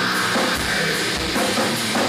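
Hardcore metal band playing: distorted electric guitars over a pounding drum kit.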